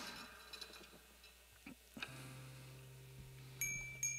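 A few faint handling clicks, then a steady low hum comes in about two seconds in. Near the end a few bright, ringing metallic pings sound about half a second apart, like a small chime.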